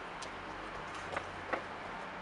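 Steady low background hum with a few faint, light taps: one near the start and two more a little after a second in.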